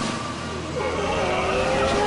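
Cartoon sound effect of the enlarging torch's beam firing: a sustained noisy rush, with a wavering tone joining about a second in.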